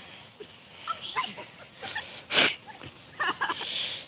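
A person's short, loud, breathy huff about halfway through, with faint snatches of voices around it.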